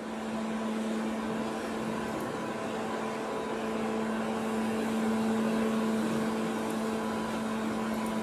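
Steady machine hum: a constant low tone over an even hiss, unchanging throughout.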